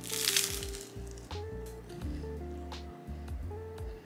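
A crunchy puffed rice cake bitten into with one loud crunch at the start, followed by a few softer crunches as it is chewed. Background music plays throughout.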